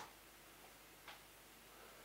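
Near silence: room tone with two faint, short clicks, one at the start and one about a second in.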